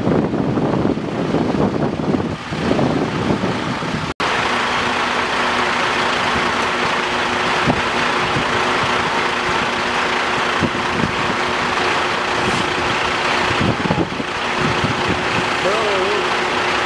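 Heavy diesel vehicles idling at the roadside, a steady engine hum over a broad mechanical noise. Before an edit about four seconds in, the sound is a rougher, lower rumble.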